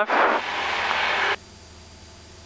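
Cockpit noise of a Cessna 172 at full power on the takeoff roll, heard through the headset intercom: a loud rushing hiss while the microphone is open, cut off suddenly a little over a second in. A faint low engine drone remains after the cut.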